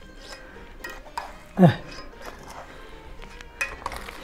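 A few light clinks and knocks of a metal baking pan and utensils being handled, as the pan of freshly baked burek is lifted and tilted so the poured water soaks in. A short vocal sound with a falling pitch comes about one and a half seconds in.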